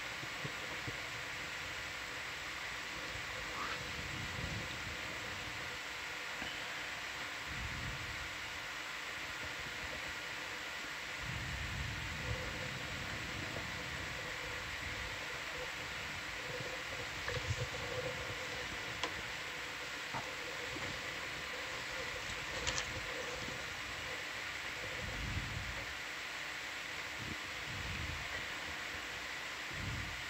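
Steady hiss and electronic hum of a control-room communications audio feed, with low rumbles coming and going and a few faint clicks.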